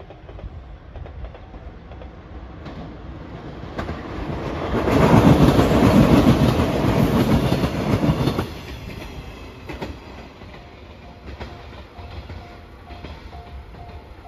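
JR 115 series electric train passing close by, its wheels clattering over the rail joints. It swells to its loudest for about four seconds in the middle and cuts off fairly suddenly. Near the end a level-crossing warning bell rings faintly in a steady repeating pattern.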